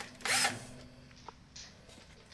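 Power drill driving a screw into wood blocking in one short burst a fraction of a second in, then stopping.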